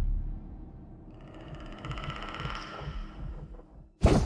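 The closing music fades out in the first second. A rumbling sound effect with rapid mechanical clicking then swells and dies away near the end.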